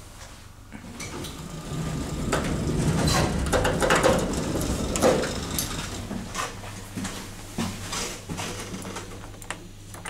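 Small elevator car's sliding doors and machinery running: a rumble with rattles that builds over the first few seconds and then eases off, over a steady low hum, with scattered clicks.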